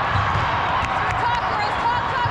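Indoor volleyball rally in a large hall: sneakers squeaking on the court and the ball being struck, over steady crowd chatter and players' voices.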